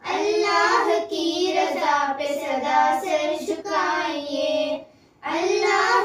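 Young girls singing an Urdu devotional kalaam (qurbani naat) with no instruments, in long sung phrases with a short breath pause near the end.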